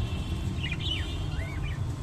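Budgerigar chirps: a quick cluster of short high chirps about half a second in, then one short rising-and-falling call near the middle, over a steady low rumble.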